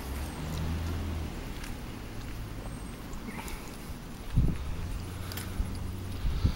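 Footsteps on pavement and rustling of a handheld camera as the operator walks, over a low steady hum, with a thump about four and a half seconds in.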